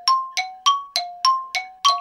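A two-note chime ringing over and over, alternating a lower and a higher tone about three times a second, each note struck and then fading.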